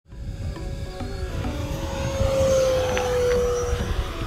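Arrows F-86 Sabre RC electric ducted-fan jet making a fast low pass, a steady whine that swells to its loudest about two and a half seconds in and drops slightly in pitch as it goes by.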